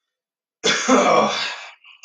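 A man coughing once to clear his throat, starting about half a second in and lasting about a second.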